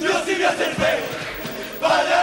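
Carnival chirigota chorus of men's voices singing loudly together, in two strong phrases, the second starting just before the end.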